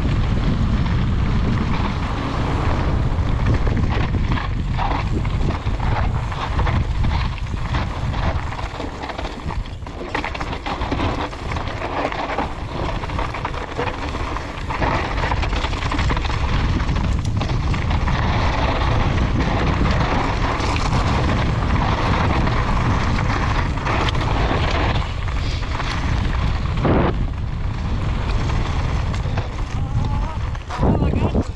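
Mountain bike running fast down a loose dirt-and-gravel trail: a steady rumble of wind buffeting the microphone, over the hiss and crunch of knobby tyres on gravel. The bike knocks now and then over bumps, once louder near the end.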